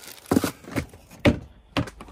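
Hands rummaging in a plastic storage tote, with packages and plastic cases knocking and clattering against it: four sharp knocks, the loudest just past the middle, with light rustling between.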